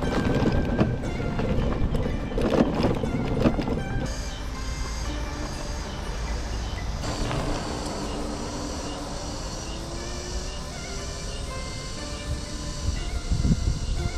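Wind and road rumble on the microphone of an electric motorcycle riding a rough dirt road, knocking over bumps in the first few seconds, then steadier. Background music plays over it.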